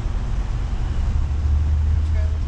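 Car driving slowly: a steady low engine and road rumble that gets heavier about a second in, with an even hiss of noise above it.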